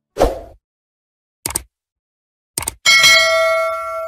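End-screen sound effects: a short thump, two quick clicks, then a bright bell ding about three seconds in that rings on and fades slowly, the notification-bell chime that goes with a subscribe animation.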